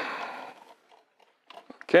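Sheet-metal housing of a small network switch scraping as it is worked apart by hand, fading out within the first second. A few small clicks follow near the end.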